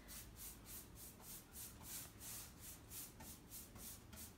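Faint, rhythmic swishing of a paintbrush stroking chalk paint across a wooden headboard, about four to five strokes a second.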